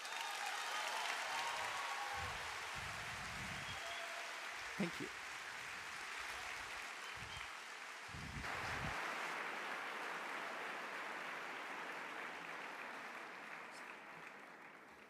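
Audience applauding steadily, with a few cheers in the first couple of seconds; the applause begins to fade near the end.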